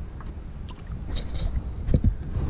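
Wind buffeting the microphone and water lapping against a kayak's hull on choppy river water, with a few faint ticks and one light knock near the end.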